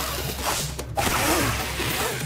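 Cartoon whoosh sound effects as a roll of police tape unspools and whips through the air: a long rushing swish, a short break about a second in, then another swish.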